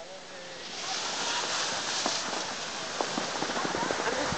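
Skis sliding and scraping over packed snow as the skier holding the camera glides downhill: a steady hiss that builds about a second in, with small scattered clicks of edges on the snow.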